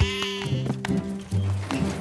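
A cartoon goat bleats once at the start, over steady background music.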